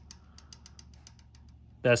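Faint, quick metallic clicking, about six or seven clicks a second, as a trunnion-upgraded LS rocker arm is rocked by hand on an adjustable checking pushrod: valve-train lash, the sign that the pushrod is set too loose.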